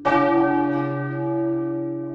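Large swinging church bell on a wooden headstock, struck once by its clapper right at the start and then ringing on with many overtones that slowly fade. Underneath, the deep hum of a bell struck earlier carries on.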